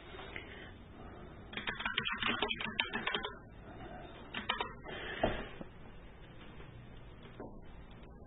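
Computer keyboard typing: a quick run of key clicks about a second and a half in, lasting under two seconds, then a few scattered clicks over faint background hiss.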